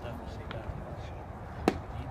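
A pitched baseball smacking into a catcher's mitt once, a single sharp pop near the end, over low background chatter and a steady low rumble.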